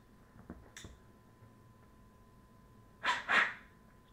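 A man exhaling cigar smoke: two short breathy puffs close together about three seconds in.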